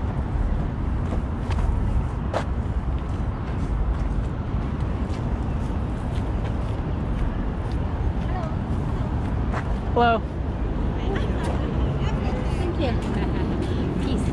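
Outdoor urban ambience while walking: a steady low rumble, like distant traffic, with faint voices of passers-by. One voice comes up briefly about ten seconds in, and a single sharp click comes a little after two seconds.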